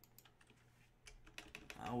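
Faint, scattered clicks of typing on a computer keyboard: a few keystrokes near the start, then a quicker run of them in the second half. A man's voice begins just at the end.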